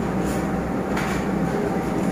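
Steady background rumble and hum of the room, with two soft rustles of paper as the pages of a large book are turned.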